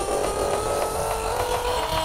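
Hardtek electronic music in a thinner passage: the heavy bass falls away at the start, leaving high synth tones pulsing in a fast, even rhythm, their pitch stepping up near the end.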